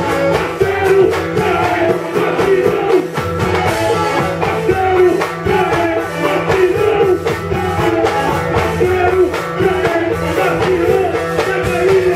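Amplified live band music with a steady percussive beat and a male singer on the microphone.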